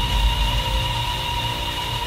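Electronic sound-effect sting for a title card: a deep bass boom with steady high electronic tones over a hiss, slowly fading.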